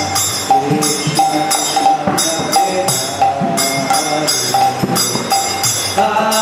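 Kirtan music without voices: a harmonium holds steady notes, a mridanga drum is played in a running pattern, and brass hand cymbals (karatalas) ring out in a repeated rhythm.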